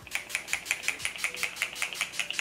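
Pump bottle of Urban Decay All Nighter makeup setting spray pumped rapidly again and again, a quick even run of short hissing spritzes.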